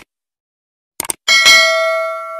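Subscribe-button animation sound effects: a short click at the start and a quick double click about a second in, then a bright notification-bell ding that rings on and slowly fades.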